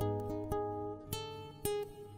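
Acoustic guitar playing a slow picked melody, single notes struck about every half second, each ringing out and fading.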